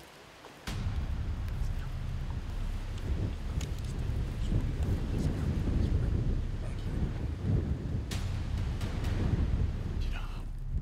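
Wind buffeting the microphone: a steady low rumble that starts suddenly under a second in, with a few faint clicks.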